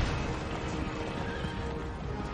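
A horse whinnying over dramatic orchestral trailer music with a heavy low rumble; the music's held notes grow through the second half.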